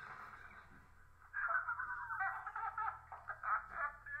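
Film trailer soundtrack playing from computer speakers and picked up faintly by the room microphone, thin and tinny with only the midrange coming through; it grows louder about a second in.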